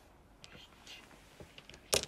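Mahjong tiles on a felt table: a few faint taps, then one sharp clack of tile against tile near the end.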